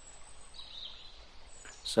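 A pause in narration: faint steady hiss with a thin high-pitched whine, and a voice starting just at the end.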